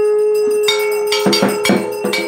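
A conch shell blown in one long steady note, joined about two-thirds of a second in by a hand bell rung in rapid strokes that grow louder.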